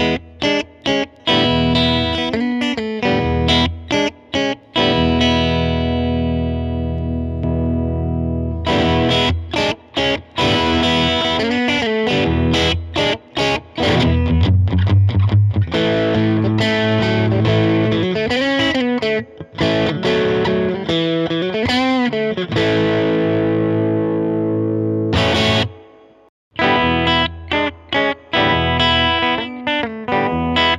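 Telecaster-style electric guitar played clean through a Mesa Boogie California Tweed 20-watt 1x10 tube combo with the gain turned well down, mixing chords and single-note lines. A chord rings out for a few seconds early on, and string bends come through the middle. After a short break near the end, playing starts again.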